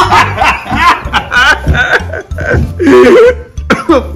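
A man laughing heartily in repeated loud bursts.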